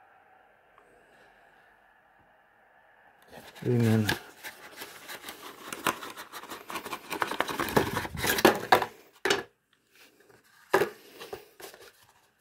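Black ribbed cardboard perfume box being handled: starting about four seconds in, a run of scraping, rustling and clicking of card for about five seconds, then a few single clicks.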